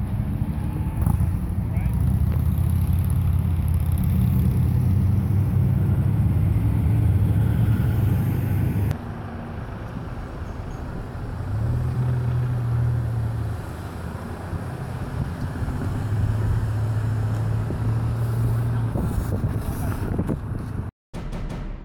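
Motor vehicle engines running: a steady low hum, then an abrupt change about nine seconds in to a quieter engine drone that swells twice.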